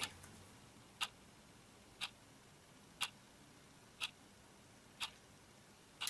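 Clock ticking, a single sharp tick about once a second over a quiet room.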